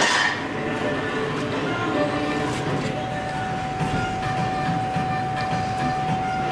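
A big bite into a tortilla-wrapped burrito at the start, then chewing, over steady room noise with a constant high whine running throughout.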